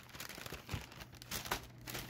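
Brown paper packing being handled and unwrapped, crinkling faintly in a few brief rustles.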